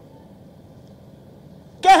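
Faint low background rumble, then near the end a man's strong singing voice cuts in, unaccompanied, holding a long high note.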